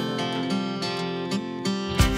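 Background pop song: strummed acoustic guitar in a gap between sung lines, with a heavy low beat coming in right at the end.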